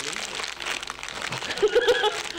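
Plastic snack bag crinkling as it is pulled open by hand, followed by laughter near the end.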